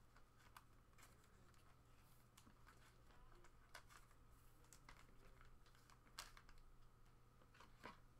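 Near silence: a low steady hum with faint, scattered ticks and crinkles of a trading card pack's wrapper and cards being handled.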